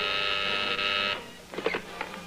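Desk telephone buzzer sounding steadily, cutting off a little over a second in, followed by a few sharp clicks and clatter as the handset is lifted from its cradle.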